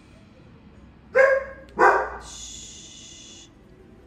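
A dog barks twice in quick succession, about a second in, followed by a high, steady whine lasting about a second.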